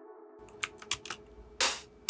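A handful of computer keyboard and mouse clicks, starting about half a second in, with one louder click a little past the middle, over a faint steady hum.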